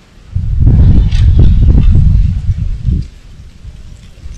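Wind buffeting the microphone: a loud, low rumbling gust from about half a second in until about three seconds, with a few faint clicks mixed in.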